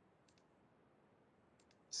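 Near silence with faint computer mouse clicks: a quick pair about a third of a second in and another pair near the end.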